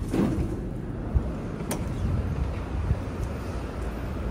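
City street noise: a steady low rumble of traffic, with a sharp knock about a second in.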